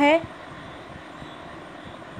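A woman's spoken word ends just after the start, followed by a steady background hiss with no distinct sound in it.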